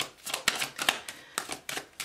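A deck of tarot cards being shuffled by hand: an irregular run of about ten crisp card clicks and flicks in two seconds.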